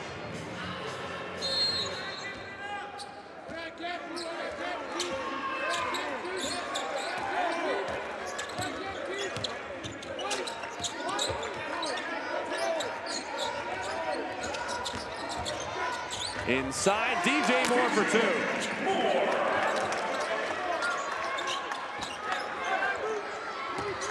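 Basketball being dribbled on a hardwood court, with sharp bounces throughout, over the voices and shouts of an arena crowd and players, busiest in the second half.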